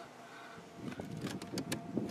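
Handling noise: a few light clicks and knocks, most of them in the second half, over a faint low background rumble.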